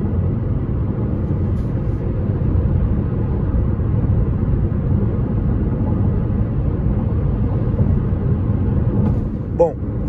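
A steady low rumble of tyres on the road and the drivetrain, heard inside the well-insulated cabin of a Jeep Compass 2.0 Flex SUV cruising at about 105–110 km/h.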